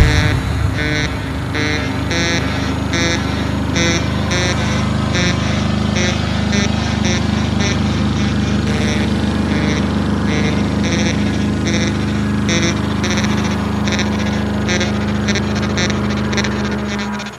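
Breakdown in a speedcore track: the pounding kick drum drops out at the start, leaving a steady, engine-like low synth drone with a held note and short high electronic stabs repeating a few times a second.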